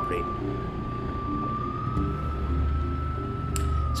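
Off-road vehicle engine running at a steady speed, a single high whine held over a low drone that grows stronger about halfway through, the whine rising slightly.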